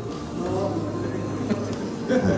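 A man's voice speaking quietly over a low, steady droning tone that changes pitch a couple of times.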